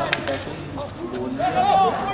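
A commentator's voice over a match broadcast, with one sharp click just after the start and speech resuming near the end.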